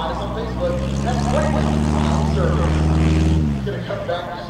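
Piper Super Cub's engine and propeller at high power close by, a steady drone whose pitch drops and fades about three and a half seconds in as the plane goes past.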